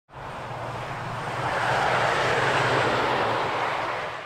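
Interstate highway traffic: a vehicle passing close by, its tyre and engine noise swelling to a peak about halfway through and then fading away.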